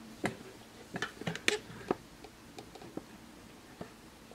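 Raindrops dripping close to the microphone: irregular light ticks and taps, a few a second and sometimes in quick clusters, over a faint hiss.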